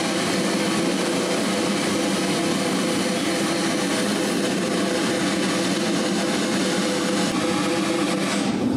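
A military band's snare drum roll, held at an even level without a break.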